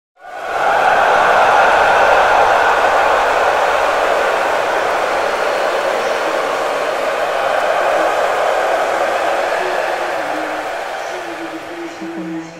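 A loud, steady rushing noise, like the blow of a hair dryer, starting abruptly and easing a little toward the end.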